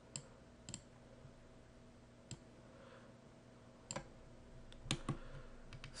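Faint computer mouse clicks, about seven of them at irregular intervals, over a low steady hum.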